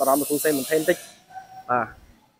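A man speaking, with a steady high hiss behind his voice that cuts off suddenly about halfway through. One short syllable follows near the end.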